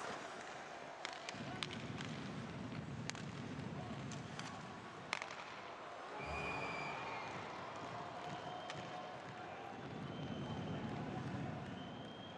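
Ice hockey arena sound: a steady murmur of the crowd, swelling now and then, with several sharp clicks of sticks and puck on the ice, the loudest about five seconds in.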